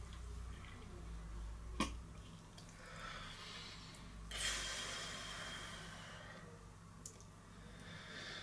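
Quiet breathing and mouth sounds of a man trying to work up saliva to spit into a saliva collection tube, with one sharp click about two seconds in and a longer breathy hiss a little past the middle.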